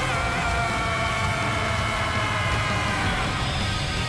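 A man's long, high-pitched battle yell, voice-acted for an anime power-up, held on one steady pitch and fading out about three seconds in, over background music.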